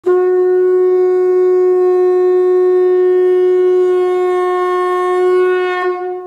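A single long, steady note blown on a horn, held for almost six seconds before it trails off near the end.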